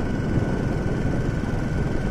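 Steady low rumble of a moving road vehicle: its engine, tyres and wind noise while it is under way. A faint steady high-pitched whine runs through it.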